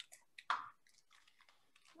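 Faint handling noise from plastic hairbrushes being fumbled in the hands: a couple of tiny clicks and one brief rustle about half a second in, then near silence.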